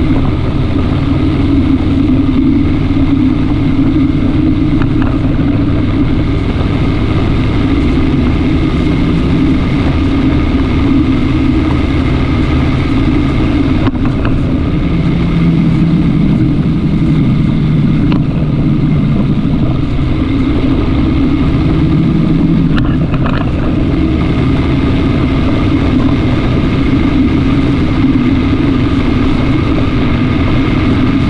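Vehicle engine running steadily at cruising speed, with wind and road noise, picked up by a camera mounted on the moving vehicle.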